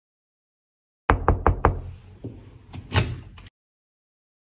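Four quick knocks on a closed interior door, followed by a few softer clicks and a louder clack from the door's handle and latch. The sound cuts off abruptly.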